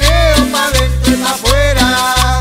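Cumbia band playing an instrumental passage: a pulsing bass line under a melody that slides between notes, with steady percussion keeping the beat.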